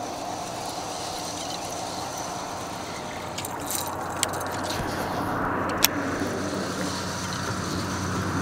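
Fishing reel and line as a crankbait is reeled in to the rod tip and cast back out, with a few sharp clicks from the tackle over steady background noise. A low steady hum comes in about five seconds in.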